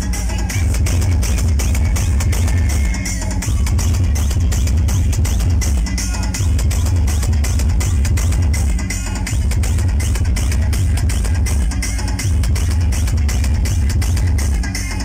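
Loud electronic dance music played through a large outdoor DJ sound system, with very heavy bass and a steady driving beat.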